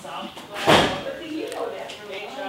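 A single brief thump about three quarters of a second in, with faint voices talking in the background afterwards.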